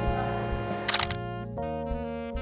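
A camera shutter fires once about a second in, two sharp clicks in quick succession, over background music.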